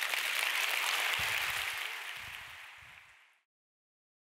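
Audience applauding, fading down and then cutting off abruptly about three and a half seconds in.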